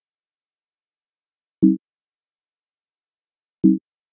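Two identical short, low electronic buzz tones, about two seconds apart, from a set of computer sound effects.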